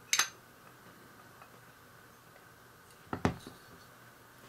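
Light clicks of hard model-kit parts being handled and fitted together as a round lid is set onto a scale-model engine block: one sharp click just after the start, then two or three more close together about three seconds in.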